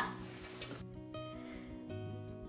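Soft background music with held notes, coming in about a second in after a moment of faint room hiss.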